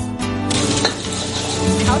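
Food sizzling in a wok as it is stir-fried with a spatula, starting about half a second in as a steady hiss.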